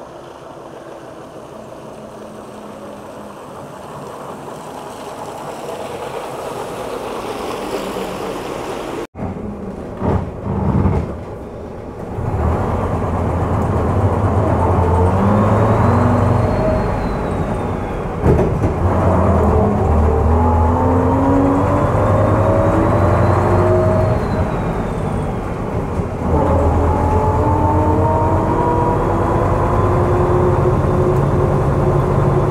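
A vintage half-cab double-decker bus draws nearer. Then, heard from on board, its engine pulls away and climbs in pitch through the gears, dropping back at each gear change, with a faint whine rising and falling above it.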